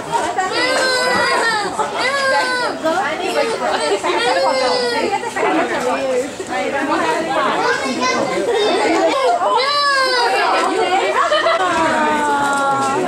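People laughing over and over in high-pitched voices, with overlapping chatter.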